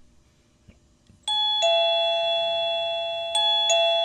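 Wireless doorbell chime ringing a two-note ding-dong twice, a higher note then a lower held note, the first about a second in and the second near the end. The chime is triggered by a Flipper Zero replaying the doorbell's captured 433.92 MHz Princeton 24-bit code.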